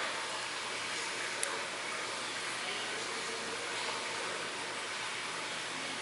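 Steady hiss of background noise, with one faint click about one and a half seconds in.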